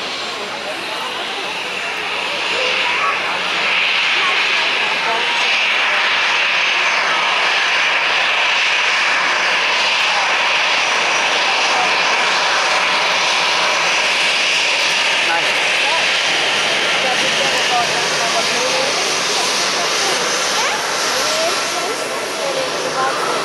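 Jet engines of a Singapore Airlines Airbus A380 running during pushback: a loud, steady jet noise with a high hiss that grows over the first few seconds and then holds.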